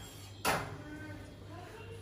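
Metal baking pan of rusks being slid out of an oven, with one short scraping clatter about half a second in.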